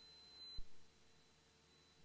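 Near silence on the radio/intercom audio feed between transmissions, with a faint low thump about half a second in.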